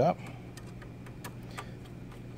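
A few faint, irregular clicks as a hand screwdriver turns a short screw into a light-mounting bracket, tightening it finger snug.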